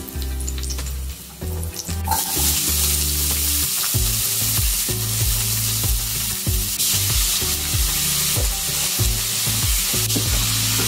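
Diced yellow onions hitting hot oil in a stainless steel frying pan and sizzling. The sizzle starts suddenly about two seconds in, as the onions go in, and keeps on steadily.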